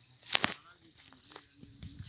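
Faint voices of people talking, with a short, loud crackle about a third of a second in.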